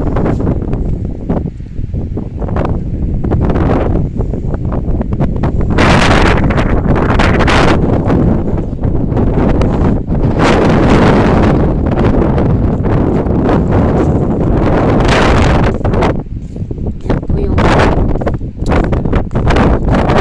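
Wind buffeting the microphone outdoors: a loud, low rumble that swells in gusts, strongest about six seconds in, again from about ten to twelve seconds, and near fifteen seconds.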